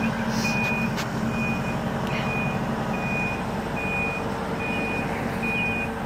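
Telehandler's backup alarm beeping, one even tone about once a second, over the machine's steady engine running.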